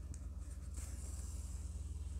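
Faint rubbing and scratching of yarn and an embroidery needle being drawn through a crocheted amigurumi head by hand, over a steady low hum.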